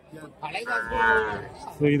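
A single moo from one of the cattle: one short call of under a second, starting about half a second in.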